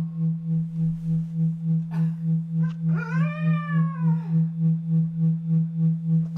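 A low electronic keyboard note held throughout, pulsing about four times a second with a tremolo effect. About halfway through, a voice gives one gliding call that rises and then falls, lasting about a second and a half.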